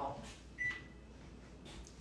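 A single short electronic beep from a kitchen oven's control panel, about half a second in.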